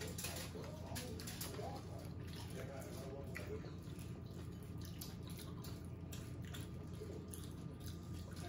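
Quiet eating at a table: faint chewing and small mouth and finger clicks as roast pig is eaten by hand, over a steady low room hum.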